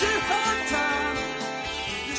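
Music with guitar in a country style, a melody line wavering over a steady beat.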